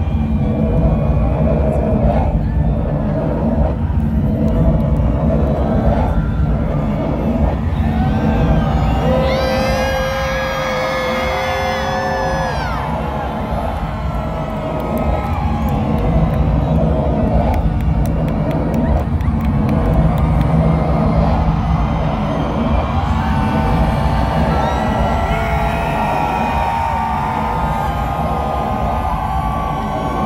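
A large outdoor concert crowd cheering, whooping and screaming over loud music from the stage PA, heard from within the audience.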